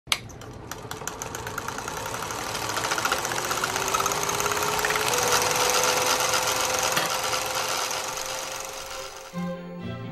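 Film projector starting up: a sharp click, then a rapid mechanical clatter of the film running through the gate, with a motor whine that rises in pitch as it comes up to speed and then holds. Near the end the clatter gives way to music.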